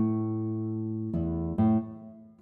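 Background music of slow, plucked acoustic guitar notes. Each note rings and fades, with a new note about a second in and another shortly after.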